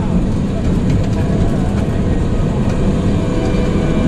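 Bolliger & Mabillard hyper coaster train rolling slowly along its steel track into the station at the end of the ride: a steady low rumble with no pauses or sharp knocks.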